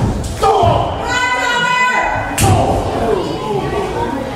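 Impacts in a wrestling ring as the wrestlers grapple, with the loudest thud about two and a half seconds in, echoing in a large hall. Just before that thud a voice lets out one long, high yell.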